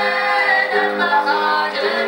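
Several voices singing a Georgian song together, holding sustained notes, with a keyboard playing along.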